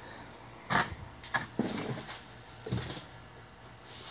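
Handling noises as a baseball bat is picked up off a table and set against a stuffed toy rabbit: a sharp knock about a second in, then a few lighter knocks and rustles.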